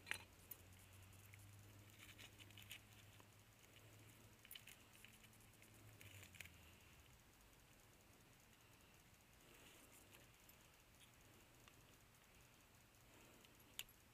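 Faint, scattered light clicks and small handling noises as fish bait is worked by hand into a metal dog-proof raccoon trap, with a sharper click just before the end. A faint low hum stops about halfway through.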